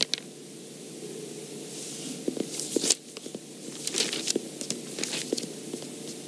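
A low steady hum of room tone with a scattering of short, irregular scratches and taps starting about two seconds in.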